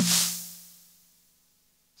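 A single Jomox Airbase drum-machine snare hit, its sustain boosted by a Wave Designer transient designer, ringing out in a long hissy tail over a low body tone and fading away over about a second and a half. The boosted sustain brings up a lot of noise ringing in the tail.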